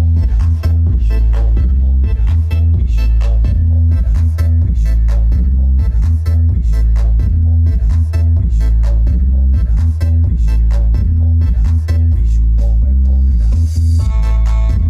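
Bass-heavy music played loud through a pair of RDW 21LS2000 21-inch woofers with 6-inch voice coils, deep bass notes in a repeating pattern far louder than the rest, over a steady beat.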